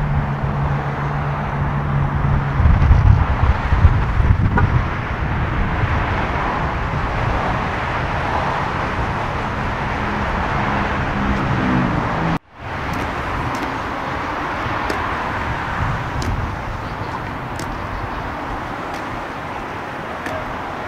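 Night-time city street ambience: steady traffic noise with wind on the microphone, and a heavier low vehicle rumble a few seconds in. The sound breaks off for a moment about two-thirds through, then the same street noise carries on.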